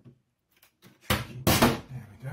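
Top cover of an Alienware Graphics Amplifier enclosure being slid back and lifted open, with two loud bursts of sliding noise a little over a second in. The cover is stiff to open.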